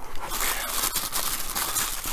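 Tissue-paper packing rustling and crinkling as small model-kit parts are unwrapped by hand: a dense, continuous run of small crackles.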